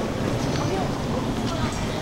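Steady low rumble of wind on the camera microphone during a walk down an outdoor street, with faint voices in the background.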